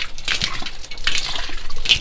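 Water trickling and dripping onto wet concrete from the leaking pipe connection of a solar thermal collector, a leak traced to a corroded copper sleeve in the fitting. A few light handling knocks come through it.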